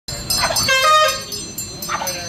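A pug barks twice, about half a second in and again near the end, over music with a fast, even jingling beat and a held melodic line.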